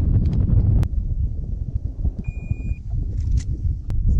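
Wind buffeting the microphone with a loud, uneven rumble on an open boat deck. A single sharp click sounds a little under a second in, and a short, high, steady beep about half a second long a little over two seconds in.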